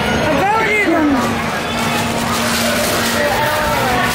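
Indistinct, overlapping chatter of a group of voices in a busy room, with one high-pitched voice rising and falling about half a second in.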